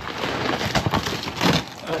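A cardboard box being pulled open by hand, its loosely taped flaps and the contents inside rustling and scraping continuously.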